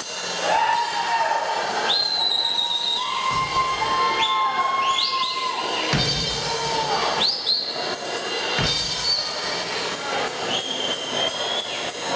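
Live rock band playing: drums with steady cymbal ticks under long sliding, wavering high tones, with a few low booming notes about three and a half, six and nine seconds in.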